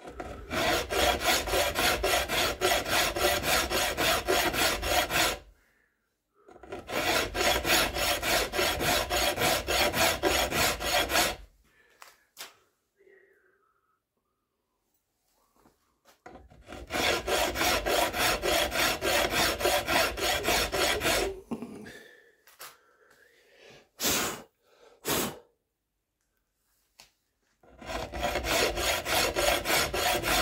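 Long flat hand file worked back and forth over a rifle stock, in rapid, even strokes. The filing comes in four spells with pauses between them, and there are two short sharp knocks near the end.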